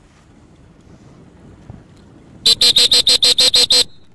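A rapid series of about ten short, identical pitched beeps, just over a second long, about two and a half seconds in.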